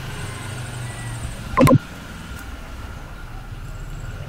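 A steady low hum under a voice recording, with a man saying 'Ok' once a little before halfway.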